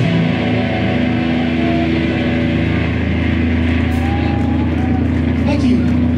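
Electric guitar amplifier left ringing with a steady, loud low drone after the drums stop, with crowd voices over it.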